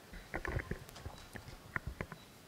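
Handling noise from a gooseneck podium microphone being adjusted by hand: irregular knocks and bumps, a cluster about half a second in and two sharper ones near the end.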